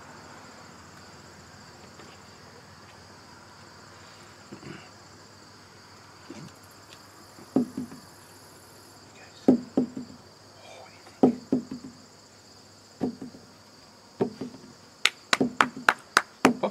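Steady high-pitched chirring of insects, likely crickets, with scattered soft knocks and taps from about halfway through and a quick run of sharp clicks near the end.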